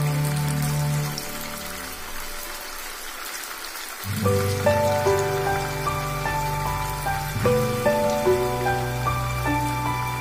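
Hot oil sizzling steadily as battered cauliflower florets deep-fry in a pan, under background music that drops out about a second in and comes back about four seconds in.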